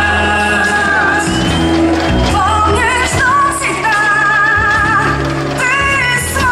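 A pop anthem sung live by a group of women at microphones over an amplified backing track with steady bass; the sung notes are held with vibrato.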